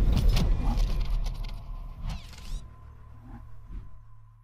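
Cinematic sound effects for an animated title graphic: a cluster of sharp hits and rattling whooshes at the start, dying away into a low steady hum that fades out near the end.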